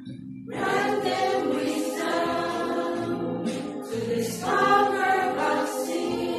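Women's choir singing a hymn together; the voices come back in about half a second in after a short breath, with another brief breath near the end.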